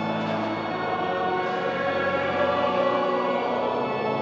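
A choir singing a hymn over sustained organ chords, echoing in a large church.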